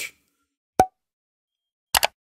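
Two short pop-like sound effects over near silence. The first comes about a second in and carries a brief pitched note; the second comes at the very end, as an on-screen thumbs-up graphic appears.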